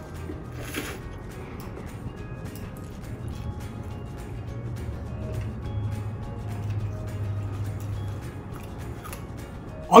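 Quiet background music, with a short slurp of rice noodles about a second in and a few soft clicks of chopsticks and bowl.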